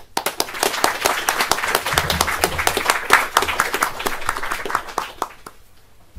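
Audience applauding: dense clapping that starts at once and thins out, dying away about five and a half seconds in.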